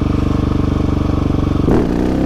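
Husqvarna 701 Supermoto's single-cylinder engine running at steady revs with a fast, even pulse; near the end the engine note changes as the throttle is worked during a wheelie attempt. The owner says the exhaust doesn't sound right and needs repacking.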